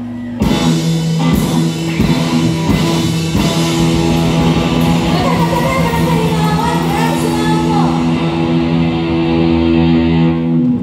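Live rock band with electric guitars and drum kit playing loudly over a PA. The full band crashes in about half a second in with several accented hits together over the next few seconds, then holds a sustained chord under a wavering higher line.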